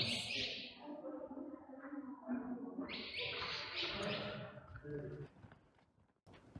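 Cave swallows chirping in quick clusters of short, high calls, one cluster at the start and another about three seconds in.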